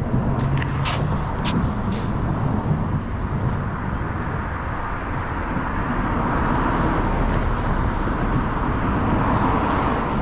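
Steady outdoor road traffic noise, a rumble with a hiss of tyres that swells gradually in the second half as a vehicle approaches. A few faint clicks in the first two seconds.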